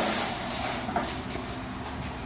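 Weight-plate-loaded sled scraping across a concrete floor as it is dragged, a rasping noise that is loudest at first and slowly fades, with a couple of faint knocks about a second in.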